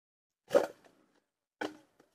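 An armload of dry firewood sticks dropped onto the ground: a wooden clatter about half a second in, then a second, smaller clatter about a second later.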